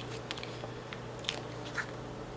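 A paper sticker sheet being handled and stickers peeled for a planner page: a few short, crisp paper crackles over a low steady hum.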